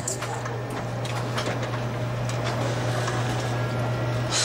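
Office photocopier running a copy: a steady low hum with light clicking from the mechanism.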